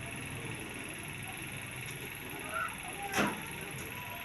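Pen writing on a notebook page, faint strokes over a steady low background hum, with a brief sharp tap about three seconds in.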